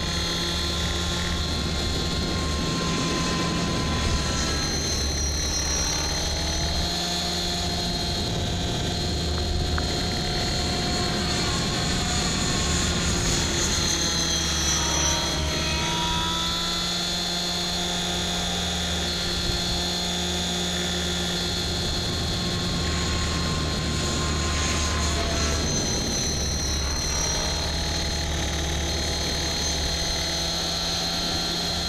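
Align T-Rex 550 electric RC helicopter flying fast passes, a steady high whine from its motor and rotor blades, the pitch dipping and recovering a few times as it goes.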